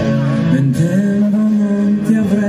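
Live pop song: a man singing into a microphone over his own acoustic guitar, holding a long note through the second half.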